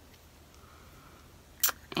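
Near-silent room tone, then one short, sharp click about one and a half seconds in, just before talking resumes.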